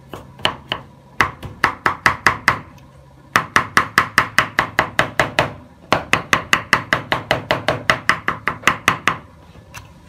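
Broad kitchen knife chopping peeled aloe vera gel on a round tree-slice wooden chopping board. The blade knocks the board with each quick stroke, about five a second, in four runs with short pauses, stopping about nine seconds in.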